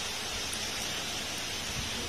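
Heavy rain falling steadily: an even, continuous hiss.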